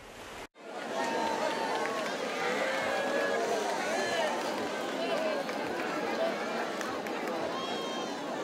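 A large crowd of spectators talking and calling out all at once, many overlapping voices at a steady level, starting about half a second in.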